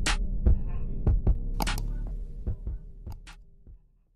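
Outro sound effect: a deep, throbbing bass hum struck through with a series of sharp clicks, fading away to nothing near the end.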